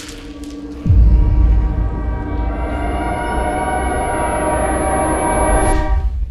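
Cinematic sound-design transition: a deep bass boom with a falling pitch about a second in. Then a sustained horn-like chord swells louder, with a thin high whine over its second half, and cuts off abruptly near the end.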